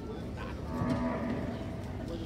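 A Brahman cow mooing once, a single held call of about a second.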